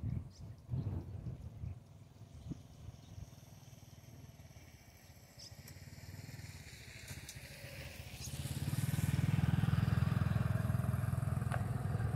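A motor vehicle's engine hum grows louder from about six seconds in, then runs loud and steady through the last few seconds as the vehicle comes near.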